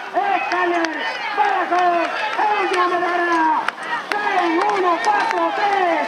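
Excited race commentator's voice calling a harness-race finish, pitched high and shouting in long drawn-out syllables.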